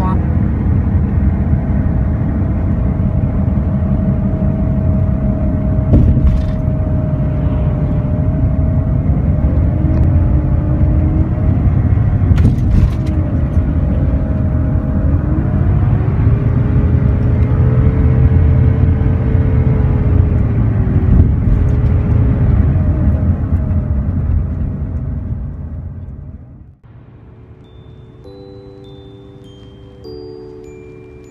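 Road noise inside a van driving on a highway: a steady low rumble of engine and tyres, with faint tones that slowly rise and fall. About four seconds before the end the rumble cuts off suddenly and soft chime-like music notes begin.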